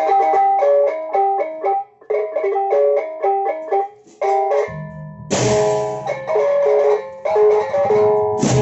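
Lombok gendang beleq ensemble: small bronze kettle gongs ring out a quick interlocking melodic pattern. About five seconds in, the big gendang beleq barrel drums and crashing cymbals join for the full ensemble.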